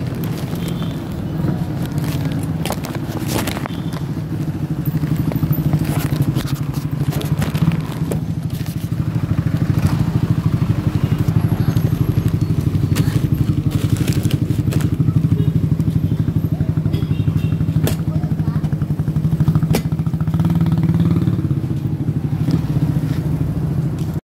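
A motorcycle engine running steadily while the bike rides along a street, heard from on the bike, with scattered knocks; it gets louder about five seconds in.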